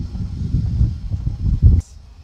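Gusty wind buffeting the microphone: an uneven low rumble that stops abruptly near the end with a brief click.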